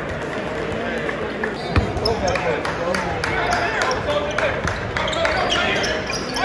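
Gym crowd chatter with a basketball bouncing on a hardwood court; one loud thump just under two seconds in.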